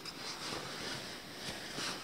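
Nylon sleeping-bag fabric rustling and crinkling as it is handled and searched through, in uneven soft scrapes.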